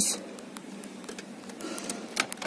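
Faint plastic clicks and small knocks, a little busier near the end, as the fuse box cover under the dashboard of a 1986 Honda Accord is pulled open by hand.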